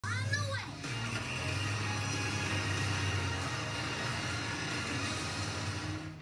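Children's cartoon soundtrack played from a television: a short high-pitched cartoon voice at the very start, then a steady low rumble of animated trucks under music.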